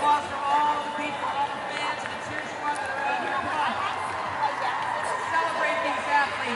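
Indistinct voices of people talking in the background, no words clear, continuing steadily throughout.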